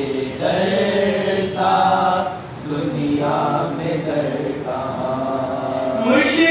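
Young male voices chanting an unaccompanied Urdu devotional recitation in long, held melodic phrases, with a short break for breath about two and a half seconds in.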